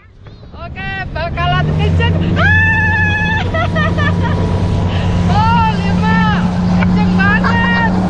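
A motorboat's engine opens up and runs steadily as the boat gathers speed, its hum growing louder over the first couple of seconds and creeping up in pitch. Over it, people laugh and shriek excitedly, with one long held scream about two and a half seconds in.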